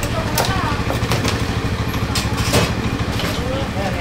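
A motorbike engine running at low revs close by, a steady low rumble, with a few sharp clicks over it.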